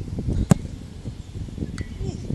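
A football kicked hard on an artificial-turf pitch: one sharp thud of the boot striking the ball about half a second in. A fainter knock follows near the end, over a low outdoor rumble.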